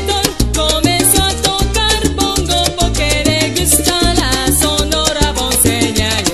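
Salsa music playing: a band with a stepping bass line, dense steady percussion and pitched melodic lines that sometimes fall off in short glides.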